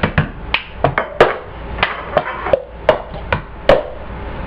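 Cup song: plastic cups being tapped and knocked on a countertop between hand claps, a string of sharp knocks at about three a second.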